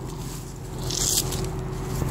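Handling noise of a handheld camera rubbing against clothing: a short scraping rustle about a second in, over a low steady rumble.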